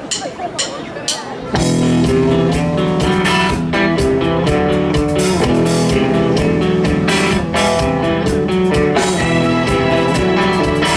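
Live rock band with electric guitars, bass guitar, drum kit and keyboards playing the instrumental intro of a song, all coming in together about a second and a half in, after a few sharp evenly spaced clicks.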